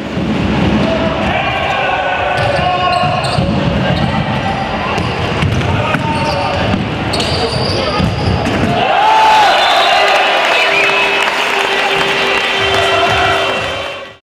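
Live sound of an indoor futsal game in a sports hall: shouting voices mixed with the knocks of the ball being kicked and bouncing on the hard court floor.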